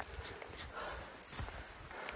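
Faint, irregular footsteps and trekking-pole taps on a steep grassy mountain trail, with the hiker's hard breathing from the climb.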